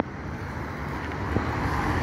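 Road traffic noise: a passing car, its engine and tyre noise growing steadily louder.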